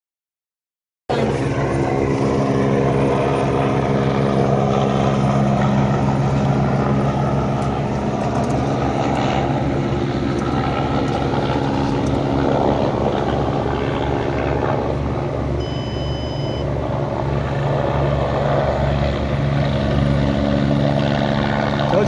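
Air ambulance helicopter flying in to land, its engine and rotor running steadily with a low pulsing rotor beat; the sound starts about a second in.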